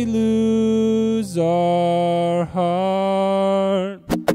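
Male voice singing three long held wordless notes, the later two lower than the first, over a ringing acoustic guitar chord that fades; the voice stops just before the end.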